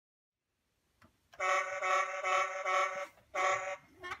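Horn honking after a faint click: one long, wavering honk of about a second and a half, then a short honk.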